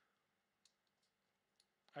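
Near silence with two faint, short clicks about a second apart, from a computer mouse button being clicked.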